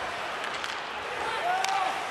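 Ice hockey arena sound during live play: a steady crowd murmur with skates and sticks clattering on the ice, and a sharp clack about a second and a half in.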